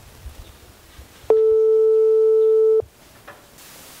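A telephone ringback tone playing through a phone's speaker while an outgoing call rings: one steady tone lasting about a second and a half.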